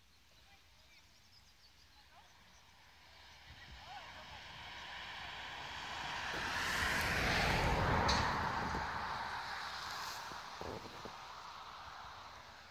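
A vehicle passing on a nearby road: a broad rushing noise that swells over several seconds, peaks about two-thirds of the way in, then fades.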